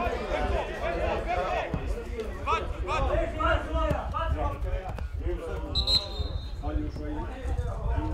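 Indistinct voices of people at a football ground talking and calling, over a low rumble. About six seconds in comes a short high referee's whistle blast.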